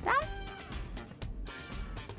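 A ragdoll cat's single short meow, rising in pitch, right at the start, over background music.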